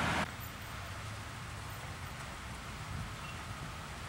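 Street traffic noise that drops off suddenly a quarter-second in. After that there is a faint, steady hum of distant traffic, with a low rumble underneath.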